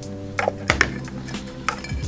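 Background music with held chords, over a few sharp clicks and taps of a plastic cup and the glass terrarium being handled.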